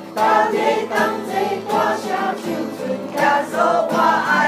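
A small congregation of mostly women singing a Christian hymn together from song sheets, accompanied by a strummed acoustic guitar.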